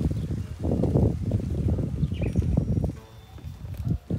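Wind buffeting the microphone of a handheld phone as it is carried outdoors, an irregular low rumble that drops away about three seconds in.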